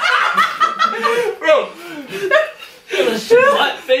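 A group of young people snickering and laughing, trying to hold mouthfuls of water in, with a shouted 'Bro!' about a second in. The laughter comes in bursts, loudest near the start and again near the end.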